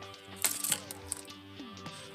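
A few sharp plastic clicks as action-figure wing pieces are handled and clipped onto the figure, over quiet background music with held tones.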